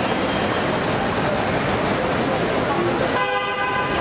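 A car horn sounds once near the end, a single held tone about a second long, over a steady din of traffic and chatter.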